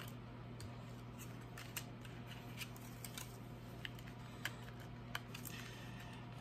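Tarot cards being handled and laid down on a table: faint, scattered clicks and light slides of card stock at irregular moments, over a steady low hum.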